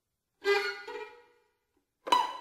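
Solo violin playing contemporary music: one sudden, loud, accented note or chord about half a second in, which dies away within about a second.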